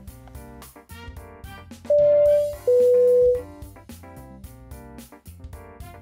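Background music with a steady beat and keyboard, cut across about two seconds in by a loud two-tone airliner cabin chime: a higher tone, then a lower one, each under a second.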